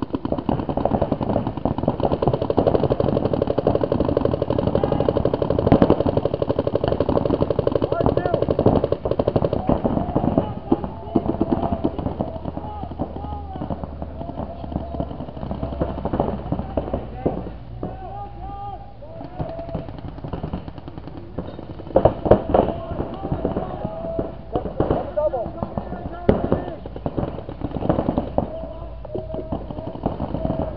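Paintball markers firing in rapid strings, dense for the first ten seconds or so and then in scattered bursts, with players shouting across the field.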